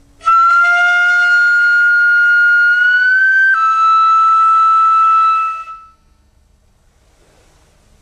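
Ryuteki, the Japanese gagaku transverse bamboo flute, playing the 'suru' technique: a held high, breathy note that slides slowly upward, then drops suddenly back down and is held before fading away.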